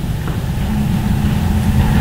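The soundtrack of a river fly-fishing film played over a room's speakers: a steady low rumble, with a low steady hum coming in about a second in.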